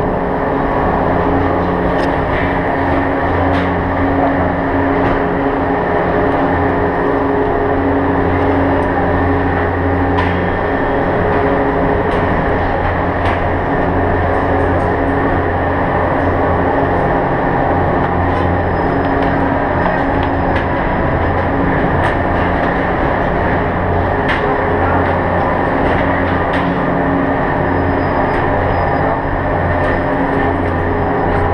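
Gondola lift station machinery running with a steady low hum, with a few light clicks and knocks scattered through it.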